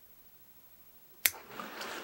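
Bonsai scissors snipping a spruce twig: one sharp click about a second in, after near silence, followed by a soft hiss.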